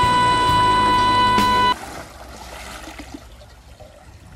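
A loud edited-in music sting, a steady high held tone over a low pulsing bed, cuts off suddenly a little under two seconds in. After it, pool water can be heard faintly sloshing and lapping from a body's splash into the pool.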